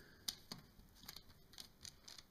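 Faint, scattered taps and rustles of fingers pressing a lump of homemade air-dry clay flat on a paper-covered work surface.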